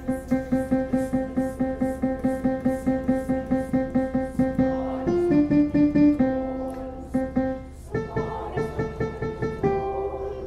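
Piano playing the alto line of a choral arrangement. It repeats one note about four times a second, moves to a few held notes near the middle, then returns to quick repeated notes.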